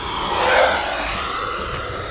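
An E-flite F-16 Thunderbirds 80mm electric ducted fan jet on a low-throttle flyby: a rushing fan sound with a high whine, loudest about half a second in and then easing off as it passes.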